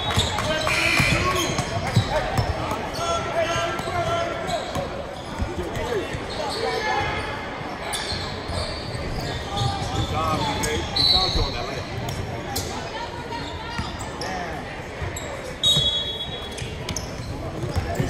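A basketball being dribbled on a hardwood court, repeated thuds that echo in a large gym. Indistinct voices of players, coaches and spectators run under it, with a few brief high-pitched squeaks.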